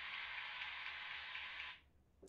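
Steady hiss of the recording's background noise, with no other sound over it, cutting off suddenly near the end.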